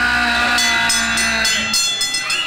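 A horn-like chord of several steady tones held for about a second and a half, with fast ticking in the high end; it stops shortly before the end.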